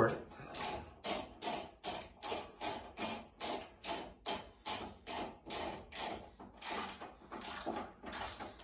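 Hand ratchet wrench clicking in a steady rhythm of about three strokes a second as a long bolt is tightened into a timber barrel-rack post.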